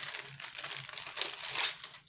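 Packaging crinkling and rustling irregularly as it is handled and rummaged through.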